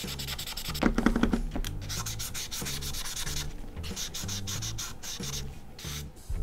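Felt tip of a Krink K-75 paint marker scrubbing back and forth across sketchbook paper, laying down a coat of paint in quick strokes. The strokes come in runs with short breaks between them.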